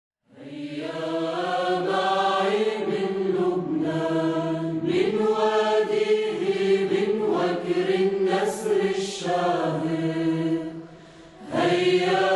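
Background music of voices chanting together in long held notes. It fades briefly near the end, then comes back.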